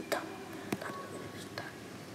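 Quiet room with faint whispering and three soft clicks spread through it.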